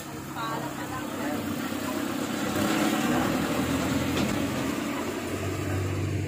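A motor vehicle's engine running close by, growing louder over the first couple of seconds and then holding steady. A brief voice is heard near the start.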